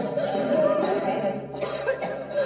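A woman coughing and choking from a shellfish allergy reaction, with music underneath.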